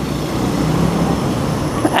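Steady wind noise on the microphone and road and traffic noise from riding in traffic on an electric motorcycle, whose motor is silent under it.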